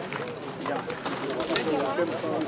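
Men talking outdoors; only speech is heard.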